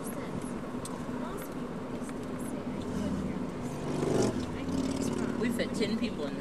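Vehicle travelling at road speed, heard from inside the cabin: a steady engine hum and road noise, swelling louder about four seconds in.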